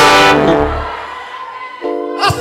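Live gospel band music: a loud held chord that fades away over nearly two seconds, with a new chord struck near the end.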